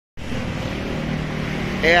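A steady low hum of a running motor, like an engine idling nearby, with a man's voice starting just before the end.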